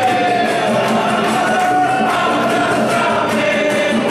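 Congregation singing a gospel hymn in chorus to strummed acoustic and electric guitars, with hand-clapping on the beat.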